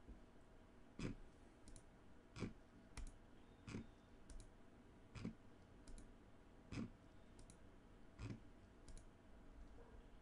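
Faint computer mouse clicks, about a dozen, roughly one every two-thirds of a second, as the button of an online list randomizer is clicked again and again.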